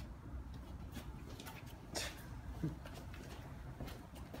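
Faint low rumble with a few light clicks and taps, the sharpest about two seconds in.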